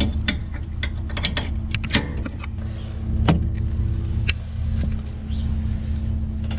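Short metallic clicks and clanks from a trailer coupler being latched onto a ball hitch and its pins handled, the sharpest about three seconds in. Under them runs a steady low engine hum.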